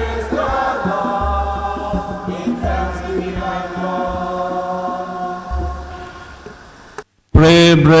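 Congregation singing a hymn together in held notes, over deep bass notes that come in at uneven intervals. The singing fades out about seven seconds in, the sound cuts out for a moment, and a man's voice begins speaking loudly just before the end.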